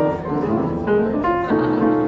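Steingraeber grand piano being played: a quick series of struck chords and notes, each ringing on until the next.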